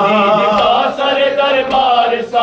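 A man singing an Urdu noha (Shia mourning elegy), holding a long wavering note, with mourners beating their chests (matam) in time, a sharp beat about once a second.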